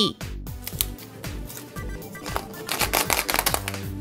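Hard plastic surprise egg handled in the hands, a run of quick clicks and rattles in the second half, over soft background music.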